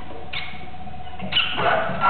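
Free improvised music from saxophone, oboe and live electronics: a steady held tone under short high squeaks and a quick falling glide, then a louder burst of sliding pitches near the end.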